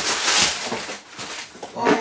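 Brown kraft packing paper crinkling and rustling as it is pulled out of a cardboard box, loudest in the first second and then dying down.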